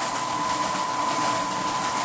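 Lyman Cyclone rotary tumbler switched on by its timer knob, its motor spinning up and then running with a steady high whine over an even rushing noise. The drum is turning with cartridge cases, soapy water and stainless steel pin media, wet-tumbling the cases clean.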